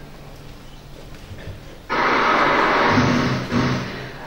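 Quiet room tone, then about two seconds in a sudden loud rush of noise from a TV news clip played over the hall's speakers, holding for over a second before dying away.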